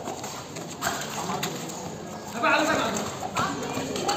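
Kabaddi players' feet thudding and slapping on foam court mats during a raid, with players shouting; the shouting is loudest a little past halfway.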